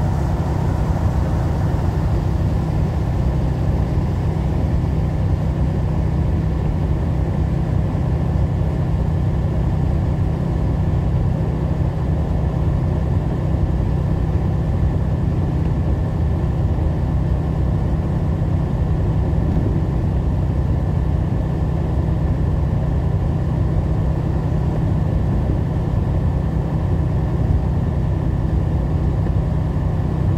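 Steady in-cab drone of a truck's engine with road noise while cruising at highway speed on wet pavement, unchanging throughout.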